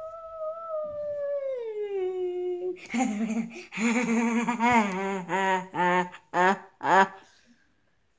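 A boy's voice making silly wordless noises: a long high whine that slides slowly downward for about three seconds, then a lower wavering hum with a shaky pitch, ending with two short sharp yelps.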